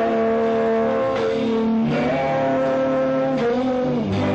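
Live rock band playing an instrumental passage: sustained electric guitar notes that slide up into pitch about halfway through, over lower held notes.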